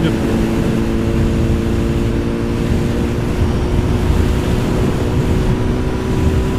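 Honda CBR1000RR inline-four engine running at a steady cruising speed, its note holding one pitch with no revving, over a low rush of wind on the helmet-mounted microphone.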